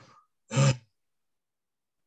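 A man's single short, gasp-like vocal exclamation about half a second in, a wordless reaction before he answers.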